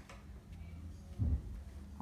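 Quiet handling noise of hands pressing a strip of play-doh onto paper on a tabletop, with one soft low thump just past a second in, over a steady low room hum.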